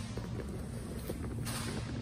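Two grapplers moving on a foam mat: faint scuffs and rustling of bodies and clothing over a steady low hum, with a brief swish about one and a half seconds in.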